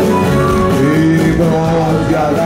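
A live acoustic folk band plays an instrumental passage between sung verses, led by plucked strings over sustained melodic lines. A male voice comes back in near the end.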